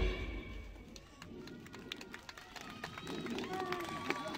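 A pop song's backing track cuts off at the very start, leaving faint outdoor ambience with distant voices and a few light clicks.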